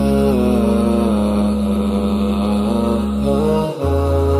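Vocal chanting in a programme jingle: a melodic voice line gliding between notes over a steady low drone. Near the end the drone breaks briefly and comes back lower.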